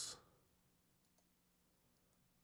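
Near silence, with a few faint, short clicks of a computer mouse.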